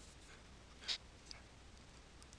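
Faint room hiss with one short, sharp scratchy sound about a second in and a softer one shortly after, from handling the computer's pointing device while editing the model.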